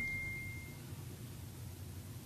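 The fading ring of a single high electronic ding, like a phone's notification chime: one pure steady tone that dies away within the first second, then quiet room tone.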